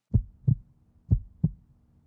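A heartbeat sound effect: deep double thumps, two beats about a second apart, over a faint low hum.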